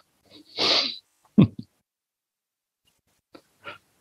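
A man laughing softly over a video-call line: a breathy puff of laughter about half a second in, a short chuckle near a second and a half, and faint breathy laughs near the end, with dead silence between.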